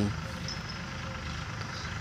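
Steady low outdoor background rumble in a pause between speech, with no distinct event.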